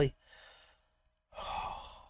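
A man's breathy sigh, a single exhale of about half a second coming about a second and a half in, after a faint short breath.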